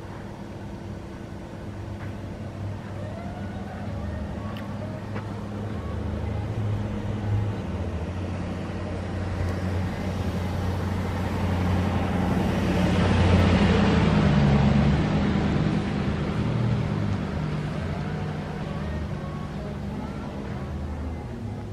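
A car driving past: a steady engine hum with tyre noise that builds to its loudest about two-thirds of the way through, then fades, the hum falling in pitch as it goes by.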